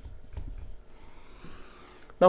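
Marker pen writing on a whiteboard: a few short, scratchy strokes in the first half second, then only faint room noise.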